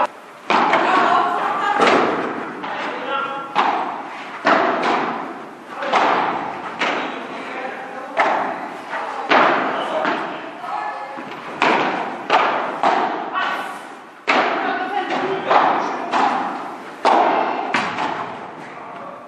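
Padel rally: solid rackets striking the ball again and again, with the ball bouncing off the court and glass walls, each hit a sharp pop that rings on in the large hall, about one every half second to second.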